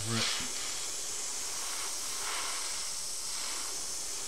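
Airbrush hissing as it sprays a light coat of clear over a model's paint, with stronger spray passes right at the start and again about two seconds in.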